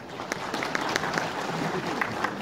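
Audience applauding in a large hall, a dense patter of many hands clapping that builds within the first half second.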